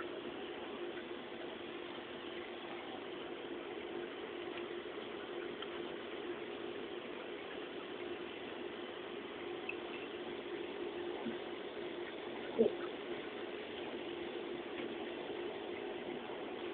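Steady background hiss and low hum, with a few faint plastic clicks of calculator keys being pressed and one sharper click about twelve and a half seconds in.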